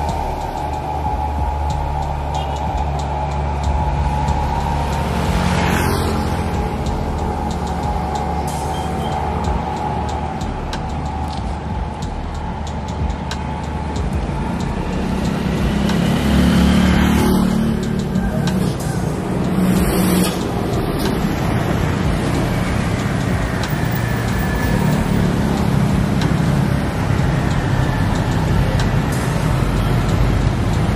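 Road traffic on a wet road: cars and motorcycles driving past with tyre hiss, with two louder pass-bys about six and seventeen seconds in.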